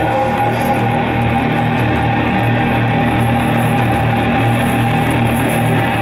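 Loud live keyboard-driven band music in an instrumental stretch without vocals: synthesizer parts over a steady bass, playing on without a break.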